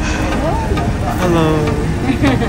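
A motor vehicle engine rumbling steadily and low, with people's voices talking over it.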